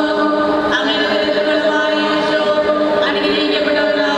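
Voices singing a slow chant in unison, in long held notes that move to a new pitch every second or so.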